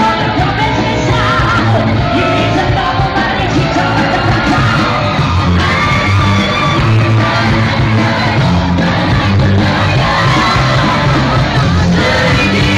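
Live rock music: a male singer singing into a microphone over a loud band, at a steady high level throughout.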